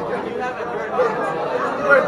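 Indistinct chatter of many people talking at once in a large hall.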